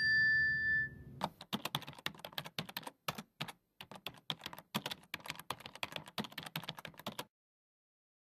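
A ringing ding fades out in the first second, then a keyboard-typing sound effect plays as rapid, irregular key clicks for about six seconds while slide text types itself onto the screen.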